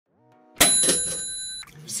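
A bright bell-like ding for an intro logo. A short faint rising tone leads into a sharp strike about half a second in, and the ring fades and cuts off after about a second.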